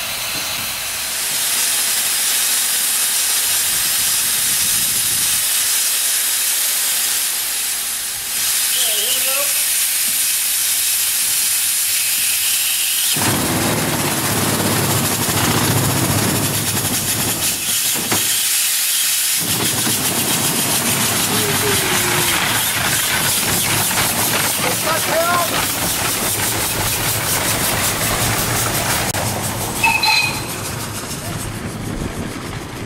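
Steam hissing from the 1897 Soame steam cart's engine as it drives off, a loud, steady hiss. About a third of the way in a lower rumble joins it, dropping out briefly just past the middle.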